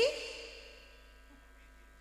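A short vocal sound through the stage microphone, a questioning sigh-like "hm?" rising in pitch, fades out within the first half second. A quiet pause follows, with only a faint steady hum from the sound system.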